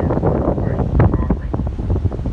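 Wind buffeting the microphone on a moving ferry's open deck: a loud, uneven low rumble.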